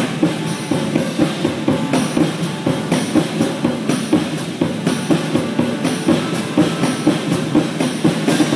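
Two drum kits played together live: a dense, steady stream of rapid drum strokes.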